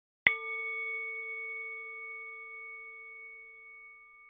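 A bell struck once, about a quarter of a second in, ringing with several clear tones and slowly fading away.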